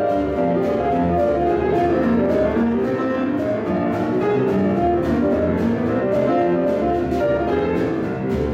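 Grand piano playing a boogie-woogie tune live, with a steady driving beat.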